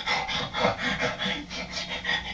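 A man's short, breathy gasps in a quick rhythm, about five a second.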